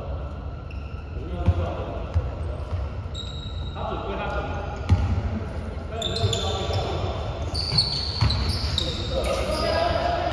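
Basketball bouncing on a hardwood gym floor, with several sharp bounces, amid shoe squeaks that come in after about six seconds and players' voices, all echoing in a large hall.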